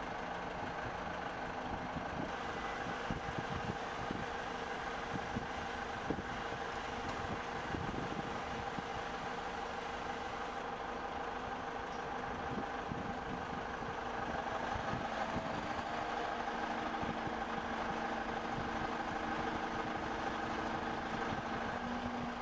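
Heavy engines running steadily on a construction site, a droning hum with several held tones, with faint occasional knocks. It gets a little louder about two-thirds of the way through.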